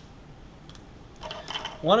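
A red felt-tip pen being picked up and its cap pulled off: a short run of clicks a little over a second in.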